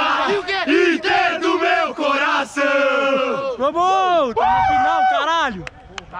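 A group of young men chanting and shouting together in a victory celebration, loud and close, in rhythmic shouted bursts that break off near the end.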